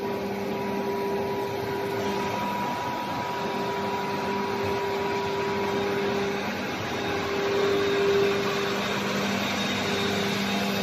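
Factory production-line machinery running, heard as a steady mechanical hum with an even whooshing noise underneath.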